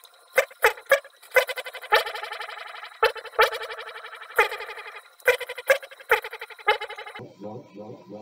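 Spoken "check" mic-test words played back through an Elk EM-4 tape echo, heard thin and trebly with no low end, each word trailing off in echo repeats, while an internal trim pot is set for more echo. The processed sound stops a little after seven seconds.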